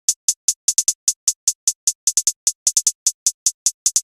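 Trap-style drum-machine hi-hat pattern played on its own: a fast, even run of crisp hi-hat ticks broken by quick rolls of closer-spaced hits.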